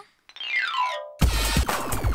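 A short electronic sound effect: a pitched tone sweeps quickly downward for about three quarters of a second. Just over a second in, it gives way to electronic music with a steady, punchy drum beat.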